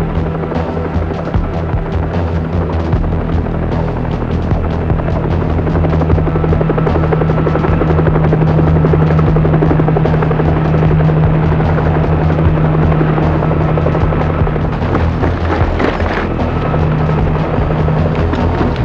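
Bell UH-1 Huey helicopter flying overhead, its two-blade rotor beating rapidly over a steady low engine drone. It grows a little louder through the middle as it passes close, with film music underneath.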